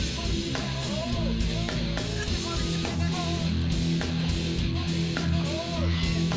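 Live rock band playing: electric guitar chords held over a steady beat, with short swooping pitched sounds recurring on top.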